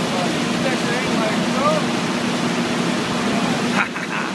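Steady loud rushing noise of a working oil drilling rig, with a low hum running under it.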